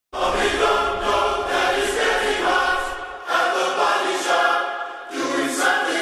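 Layered, choir-like voices singing the song's hook as a slow chant with little backing, in phrases that break about three seconds in and again near the end, with a low hum under the first phrase.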